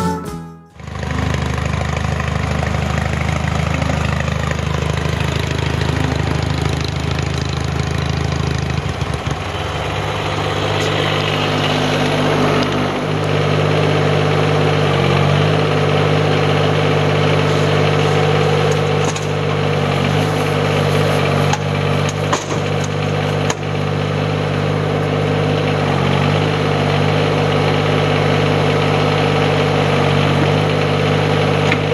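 Compact tractor engine running steadily under the load of its rear backhoe digging out gravel and dirt, the pitch changing slightly as the hydraulics work. Several sharp knocks come through about two-thirds of the way in.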